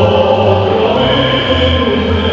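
A group of children singing together in chorus over musical accompaniment, with held, sung notes.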